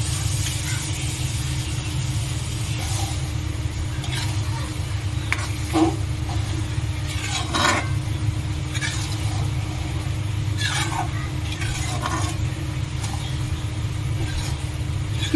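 Beaten eggs hitting hot oil in a steel kadhai, sizzling, then a metal spatula scraping and stirring the pan in a series of strokes from about six seconds in. A steady low hum runs underneath.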